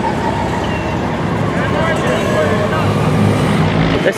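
Street traffic: car and bus engines running in a steady rumble, with one engine growing louder toward the end. Faint voices of people are mixed in.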